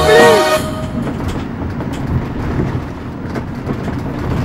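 Music cuts off about half a second in, giving way to the low, steady road rumble of a moving passenger van heard from inside the cabin, with faint rattles and ticks.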